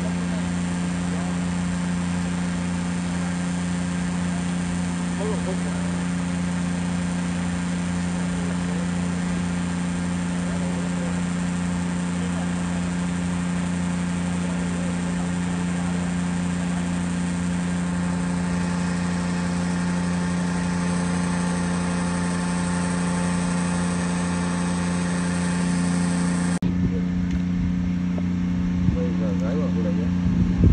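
Shrimp-pond aeration machinery: a motor running with a steady low hum. The higher hiss over it drops away abruptly near the end while the hum carries on.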